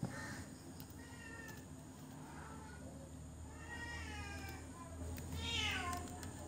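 An animal calling: a few short pitched cries, then a louder drawn-out call that falls in pitch near the end.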